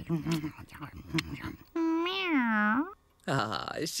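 A cat's single long meow, about a second long and dipping and rising in pitch, some two seconds in. It follows a short stretch of indistinct voice.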